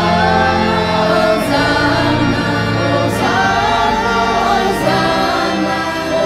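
Choir singing a church hymn in phrases of long held notes.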